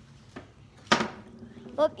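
A foosball table knocked during play: a faint click, then one sharp, loud clack about a second in that rings out briefly.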